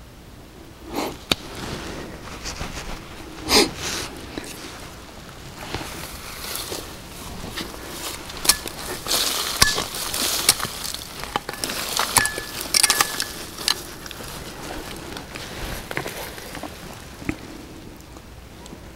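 Irregular rustling and scraping broken by many sharp clicks and short knocks: rough agate stones and soil being handled and knocked together in gloved hands.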